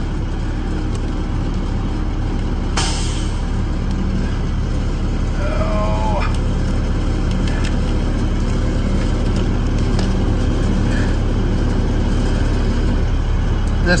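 A truck engine idling steadily, a low even rumble heard from inside the cab, with a short sharp noise about three seconds in.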